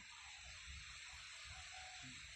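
Near silence: a faint steady hiss over a low rumble.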